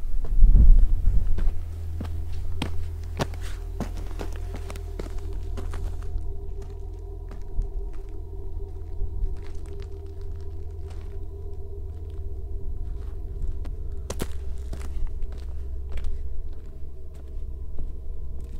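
Boots walking on dry sandy dirt and loose stones, irregular footsteps crunching and scuffing, over a steady low drone.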